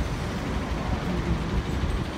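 Steady city street traffic noise: a low, even rumble of vehicles running in the roadway alongside.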